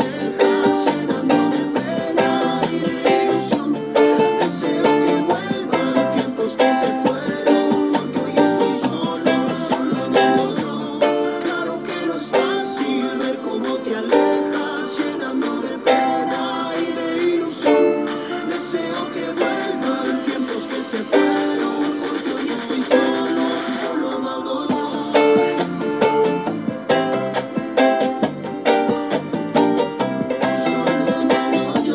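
Ukulele strummed in a steady rhythm through a chord progression of D minor, C, G minor and C, with quick down-up strums. One chord rings out longer a little past the middle before the strumming picks back up.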